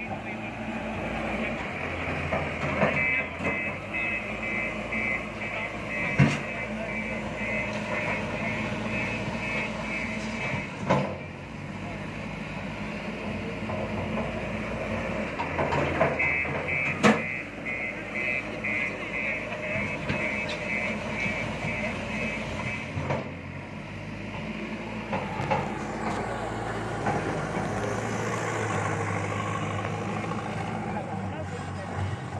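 JCB telehandler diesel engines running as the machines manoeuvre, with a reversing alarm beeping about twice a second in two spells. A few sharp knocks stand out.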